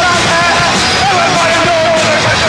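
Live punk rock band playing loudly, electric guitar and drums filling the sound, with a wavering melody line carried over the top.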